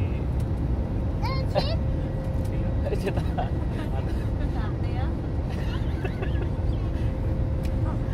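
Steady low rumble of an airliner cabin, engine and airflow noise, with a thin steady hum over it.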